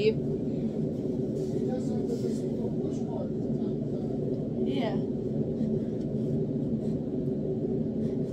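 A steady low room hum with a brief, high gliding squeal from a baby about five seconds in.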